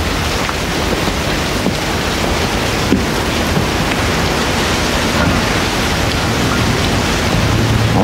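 Steady rushing noise of sea wind and surf, even throughout, with a faint click about three seconds in.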